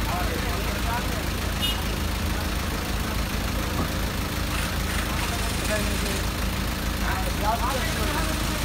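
A vehicle engine idling steadily with a constant low hum, with faint voices nearby.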